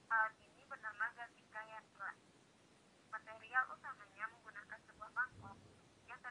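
Speech: a woman narrating, her voice thin with little low end, with a short pause in the middle.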